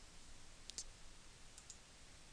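Two faint computer mouse clicks about a second apart, each a quick double tick of press and release, over near-silent room tone.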